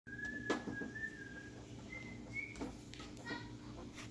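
Soft whistling: one high note held for over a second, then two short, slightly higher notes, over a low steady hum, with a light click about half a second in.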